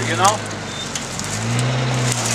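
Jeep Cherokee's engine running under load as it tows a trailer out of brush on a chain; its steady hum eases about half a second in and picks up again near the end. Dry brush and twigs crackle under the dragging trailer.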